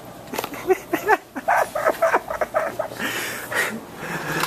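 A man's voice making quick, choppy vocal sounds with no clear words, rising and falling in pitch.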